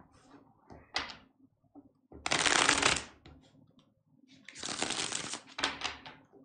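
A deck of tarot cards being shuffled by hand: two bursts of card noise about a second long each, the first the louder, with a sharp snap about a second in and another near the end.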